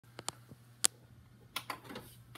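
A handful of sharp, irregularly spaced mechanical clicks and taps over a faint steady low hum.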